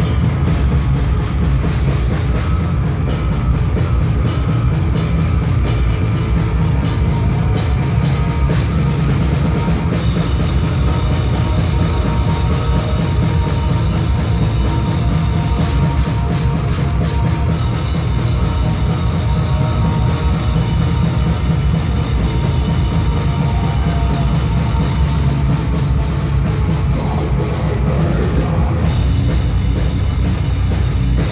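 Heavy metal band playing live at full volume, with a pounding drum kit and a heavy, dense low end.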